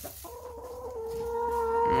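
A hen giving one long, steady, drawn-out call that grows louder for nearly two seconds.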